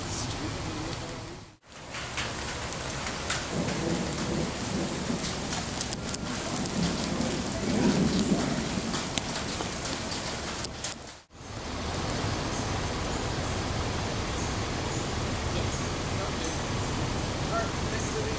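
Steady rain falling, with a low rumble swelling about seven to nine seconds in. The sound cuts out briefly twice.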